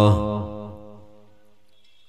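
The end of a man's long held chanted note in an Arabic salutation on the Prophet. It breaks off right at the start and dies away over about a second, leaving quiet.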